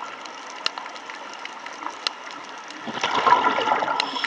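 Underwater ambience with scattered sharp clicks. About three seconds in comes a louder rush of bubbling as a scuba diver breathes out through the regulator.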